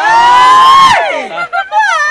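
A high-pitched delighted squeal, held for about a second and falling away, followed by a shorter excited cry.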